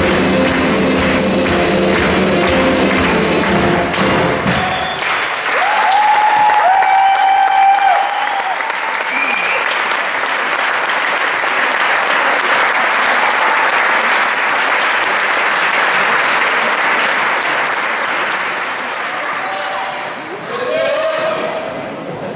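Latin dance music that stops about five seconds in, followed by an audience applauding for about fifteen seconds, with a couple of drawn-out cheering calls just after the music ends. The clapping fades near the end as voices take over.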